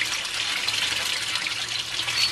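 Steady running and pouring water from a backyard aquaponics system: pump-fed water flowing into the grow beds and a bell siphon draining a grow bed into the fish tank.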